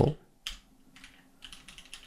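Typing on a computer keyboard: a single keystroke about half a second in, then a quick run of keystrokes in the second half.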